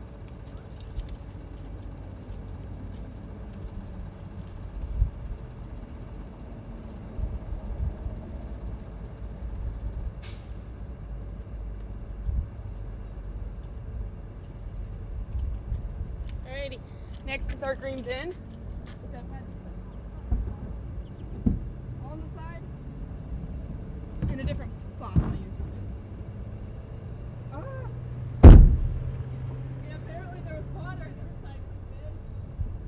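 Outdoor traffic rumble with a faint steady hum, broken by scattered distant thumps and knocks, and one loud close knock near the end.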